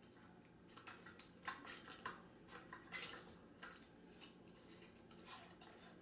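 Metal screw band being twisted down onto the threads of a glass mason jar, giving a run of faint scraping clicks for about three seconds and a few more near the end. This is the last lid of a batch of hot-packed pickled wild leeks being closed for sealing.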